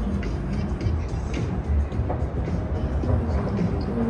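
Night-time city street ambience: a steady low rumble of traffic with music playing over it, and light ticks now and then.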